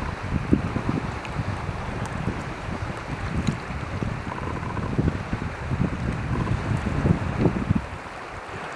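Wind buffeting the microphone in irregular low gusts, over a steady rush of wind and choppy water.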